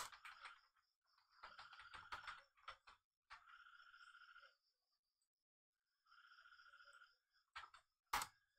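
Faint computer keyboard typing and mouse clicks, with two stretches of fast, even rattling clicks in the middle, each about a second long, and a couple of sharp clicks near the end.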